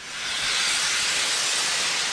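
Steam locomotive venting steam low down at the front, a loud steady hiss that builds up over the first half second.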